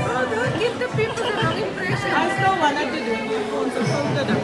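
Several people talking over one another at a table, with music playing in the background.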